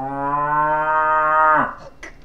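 A toy cow's moo: one long call that rises in pitch at first, holds steady, then cuts off near the end.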